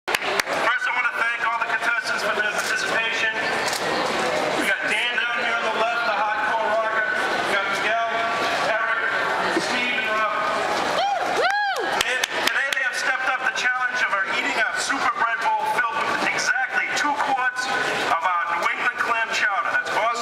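A man's voice amplified through a handheld megaphone, over the chatter of a crowd. About eleven seconds in, a brief tone rises and falls in pitch.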